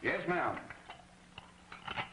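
A brief voice at the start, then a few light clicks and clinks of dishes and tableware at a dinner table, over the faint hiss and hum of an old film soundtrack.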